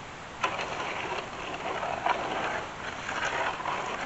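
Shovel scraping and scooping dirt in a wheelbarrow, in repeated strokes about a second apart, with a sharp clink about half a second in.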